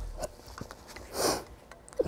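A man who is crying sniffs once, about a second in, with a few faint clicks around it.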